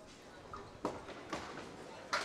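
A few faint knocks and clatters of candlepin bowling alley sounds, about half a second apart.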